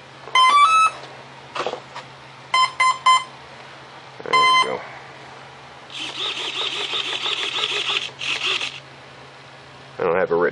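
Electronic speed controller of an RC plane chiming through its brushless motor on power-up: a quick run of rising tones, then three short beeps and a single longer beep, the usual start-up and arming signal. Then a small servo whirs for about three seconds, with a short break near the end.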